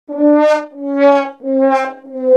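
Sad trombone comic sound effect: three short brass notes, each a step lower than the one before, the 'wah-wah-wah' that signals failure or disappointment.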